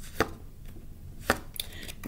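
Two sharp knocks about a second apart, then a few lighter clicks near the end: oracle cards being handled and knocked against a hard tabletop as a card is drawn from the deck.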